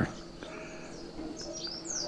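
Birds chirping faintly in the background, a few short high chirps in the second half, over a faint steady hum.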